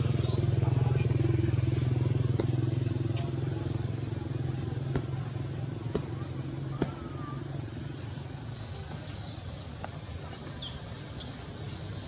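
A motor vehicle engine runs with a steady low hum, loudest at first and fading away about halfway through. A few short high chirps and light clicks follow near the end.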